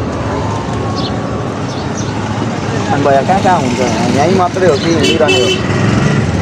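Street traffic noise, a steady low engine rumble with passing vehicles, under a man talking in the second half. A short high-pitched beep sounds near the end.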